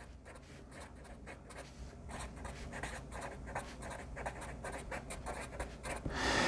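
Quiet scratching of a black felt-tip marker writing words on paper: a quick run of short pen strokes.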